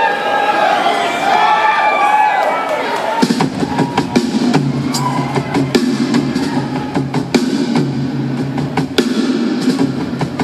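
Concert crowd cheering and whooping, then about three seconds in a live rock band starts a song: drum kit hits over a held low bass or keyboard note.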